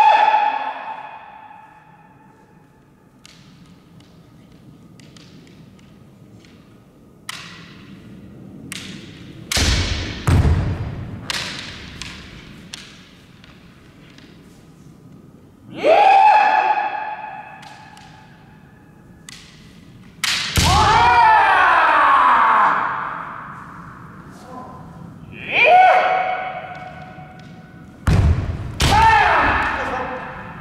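Kendo sparring: bamboo shinai clacking against each other, a heavy foot stomp on the wooden floor about ten seconds in, and loud kiai shouts from the fencers, the longest a few seconds after the middle. The hits and shouts echo in the large gym.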